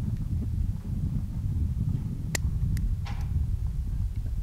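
A sharp click about two and a half seconds in, followed by two lighter clicks, as the folding trigger of a small Belgian .22 Short pocket revolver is worked, over a steady low rumble of wind on the microphone.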